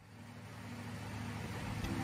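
A low, steady hum fading in from near silence and growing louder.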